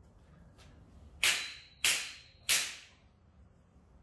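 A large flat steel ring struck three times, about two-thirds of a second apart: each a sharp metallic crack that dies away in about half a second, with a faint high ring carrying between the strikes.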